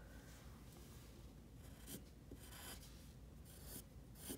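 Pencil drawing on paper: a few short, faint, scratchy strokes in the second half.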